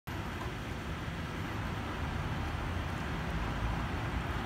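Steady outdoor background rumble, strongest in the low end and even throughout, with no distinct events.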